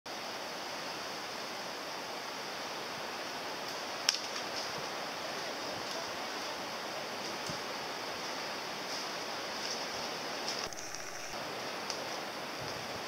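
A steady, even rushing noise with one sharp click about four seconds in.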